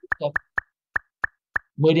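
Short plopping blips from a classroom scoring game's sound effect, about six in quick succession at irregular spacing of roughly a third of a second, each one marking a point added to a group's score.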